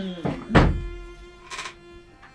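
Soft background film score holding a sustained chord, with a single heavy thunk about half a second in.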